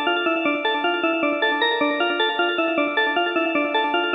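Synthesized bell melody played on Serum's Bell Dream preset: a simple, repetitive pattern of quick, short notes at a steady tempo.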